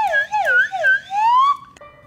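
Slide whistle played in wavering swoops: a few quick dips and rises in pitch, then a long rising glide that cuts off about a second and a half in.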